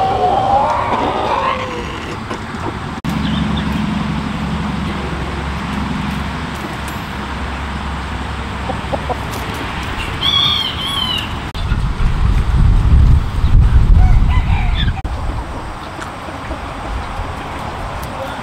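Roosters and hens calling, with crowing and clucking. A higher, warbling call comes about ten seconds in. A loud low rumble takes over for a few seconds in the second half.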